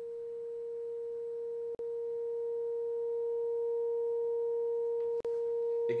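A loudspeaker driving a Rubens' tube plays a steady pure sine tone near 460 hertz that grows gradually louder as the volume is turned up. The tone cuts out for an instant with a click twice, a couple of seconds in and about a second before the end.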